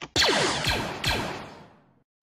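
Sci-fi sound effect: a noisy whooshing burst with falling tones that sets off three times in quick succession and fades out over about a second and a half.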